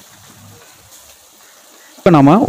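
Faint, steady sizzling of a shallot and tomato masala frying in oil in a clay pot as it is stirred.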